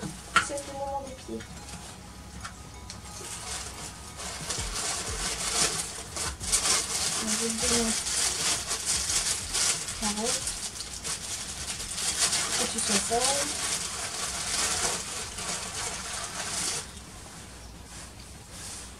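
Grooming brush rubbing over a mini Shetland pony's coat: a steady scratchy brushing that starts a couple of seconds in and stops suddenly near the end, with a few brief murmured voice sounds.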